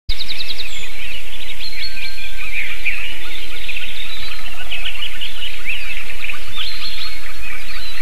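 Several songbirds singing in a dawn chorus: many overlapping chirps, short trills and whistles, with a fast ticking trill near the start. Under them runs a steady low hum.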